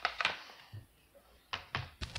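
A quick run of sharp clicks and knocks, then a few more knocks with dull thuds about a second and a half in: handling noise.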